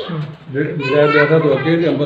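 Speech only: a man talking, with a short pause about half a second in.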